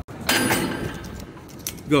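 A short burst of rattling and rustling movement noise starts about a quarter second in and fades within the first second, followed by quieter room sound and a faint click. A man says "Go" at the very end.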